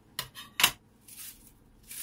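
Plastic cling wrap being handled and pulled from its roll: a few short crackles within the first second, the loudest a little after half a second in, then fainter rustling.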